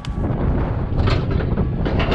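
A low, steady rumbling noise with a few sharp clicks and knocks, about a second in and again near the end, as steel load chains hanging on a flatbed tractor's rack behind the cab are reached for and handled.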